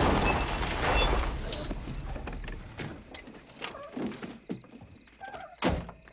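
Loud noise at the start dying away over the first two seconds, then a few light knocks and a car door slammed shut near the end.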